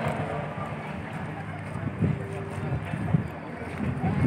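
Indistinct voices of people talking nearby, with a steady low background murmur.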